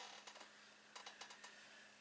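Near silence, broken by a few faint light clicks and taps from an eyeshadow palette and makeup brush being handled.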